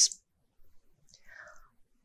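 The tail of a woman's spoken word, then near quiet with a faint breathy, whisper-like sound about a second in.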